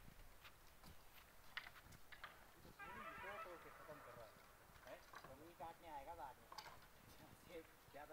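Faint, distant voices of people calling and talking, with a few scattered light clicks and knocks.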